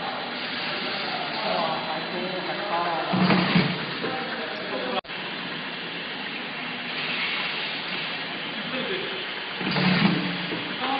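Steady mechanical hum of an automatic side-labeling machine running on a factory floor, with people talking indistinctly over it. The sound cuts out for an instant about halfway through.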